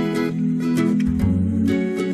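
Background music: an acoustic guitar track with plucked notes and a bass line.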